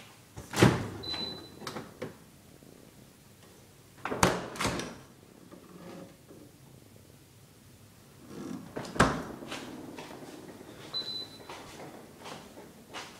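Side-by-side refrigerator doors being opened and shut: three sharp thumps, the middle one doubled, each with a short rattle. A short high beep sounds twice.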